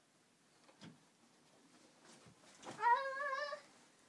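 A toddler's short vocal sound near the end: one call that rises in pitch and is held for under a second with a wavering pitch.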